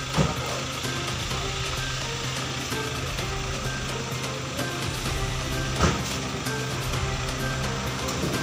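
Soft background music over the steady low hum of an idling SUV engine, with two brief thumps, one just after the start and one about six seconds in.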